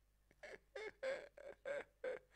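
A man laughing: about five short, pitched bursts of laughter in quick succession, starting about half a second in.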